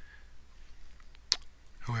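A single sharp computer-mouse click about a second and a half in, opening a file's menu.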